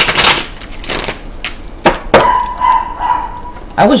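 Tarot cards being shuffled: a brief papery rush, then a few sharp card slaps or taps. A steady high tone runs through the second half, and a word of speech comes at the very end.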